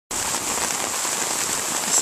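Steady rain falling, an even hiss with no other sound standing out.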